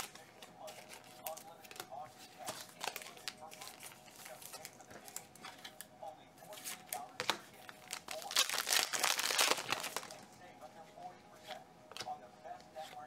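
Foil wrapper of a 2018 Select football card pack crinkling and being torn open, with the loudest tearing about nine seconds in, among small clicks and rustles of cards being handled.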